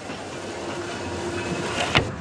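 A train running along the track, a steady rumble of the carriages on the rails that grows a little louder. A faint held tone sounds in the middle, and there is a sharp click near the end.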